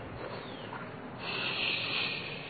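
An insect's high, steady buzz comes in about a second in and holds for about a second and a half over faint outdoor background noise.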